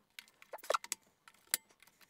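AA batteries being pushed into the plastic battery compartment of a Sony XDR-S61D portable radio: a handful of short clicks and taps, the sharpest about three-quarters of a second in and another about a second and a half in.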